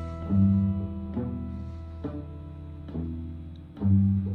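Small jazz group of two electric guitars and double bass playing a slow, sparse passage: low notes that ring on, with a new note struck about once a second.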